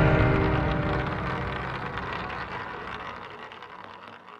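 Intro logo music dying away: the ringing tail of a deep hit fades steadily until it is almost gone near the end.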